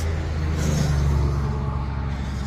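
Highway traffic going by: a steady low rumble of tyres and engines, with one vehicle passing loudest around the first second and then fading.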